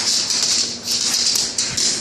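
Scratchy, rattling rustle in quick bursts, about three or four a second, from a pit bull lunging and snapping at a broom's bristles. It stops abruptly at the end.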